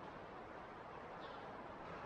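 Faint, steady hiss of room tone with no distinct sounds.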